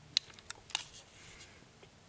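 A few light clicks within the first second, as a small object is handled in the hands, then only faint background hiss.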